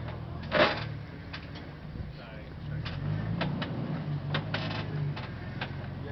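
Off-road vehicle's engine running at low revs, with a small rise in note between about three and five seconds in. Scattered clicks and knocks sound over it, and a louder burst comes about half a second in.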